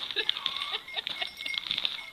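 Rapid clicking and scraping of Akita dogs' claws on ice as they scramble and play, with a brief high whine about half a second in.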